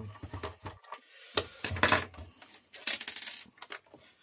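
Plastic housing of a Scarlett SC 042 hand mixer being pried apart by hand: plastic creaking and rubbing, with sharp clicks as the snap latches let go, loudest about two and three seconds in.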